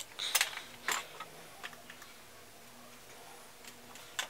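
A few short clicks and rustles from makeup items being handled in the first second, then quiet room tone with a couple of faint ticks.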